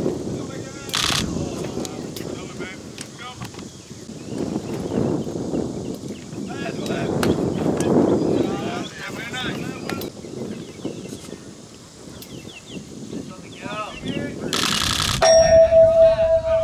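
Voices of players and spectators at a baseball game, with a short sharp crack about a second in. Near the end comes the loudest sound, a harsh clang, followed by a steady metallic ring.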